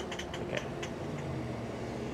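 Aniioki A8 Pro Max e-bike slowing on the road: a steady low hum with road and tyre noise, and a few light ticks in the first second.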